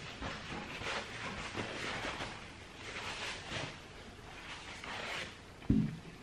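A person chewing a bite of microwaved quiche with a soft pastry crust: irregular soft mouth noises, with a short low thump near the end.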